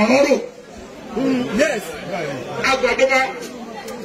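Speech only: a man talking into a hand-held microphone, with chatter from a crowd around him.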